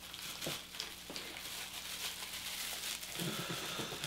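Faint rustling and crinkling of plastic bubble wrap and packing being handled in a cardboard box, with a few light clicks.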